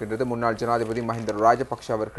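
Only speech: a man talking steadily in Tamil.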